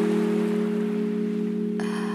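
Intro background music: a held, slowly fading chord, with a bright high shimmer coming in near the end.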